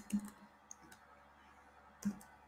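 Computer keyboard keys being typed: a few short clicking keystrokes, most of them in the first second.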